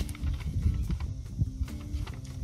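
Paper envelope rustling and crinkling in short scrapes as a letter is pulled out of it by hand, over a steady low rumble.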